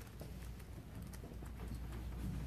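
Footsteps on a hard floor, a series of light irregular clicks, over a steady low room hum.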